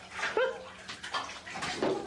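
Bath water splashing and sloshing in a bathtub as a cat on the rim slips toward the water, with a brief cry about half a second in and a louder splash near the end.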